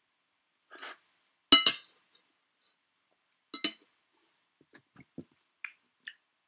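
A metal fork clinking against a ceramic plate: a sharp ringing clink about one and a half seconds in, the loudest sound, and another about two seconds later, with a few soft knocks near the end. A brief slurp comes just before the first clink.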